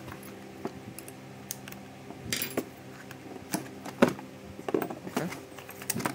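Cyma MP5K airsoft electric gun being handled during disassembly: scattered small clicks and knocks of its plastic and metal parts against each other and the table, the loudest about four seconds in.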